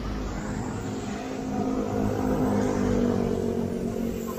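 Motor vehicle engine running at low road speed, its pitch rising a little from about a second and a half in and then easing. Wind rumbles on the microphone underneath.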